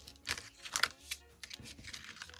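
Cardstock craft tags handled and shifted by hand on a table: a few short rustles and scrapes of card.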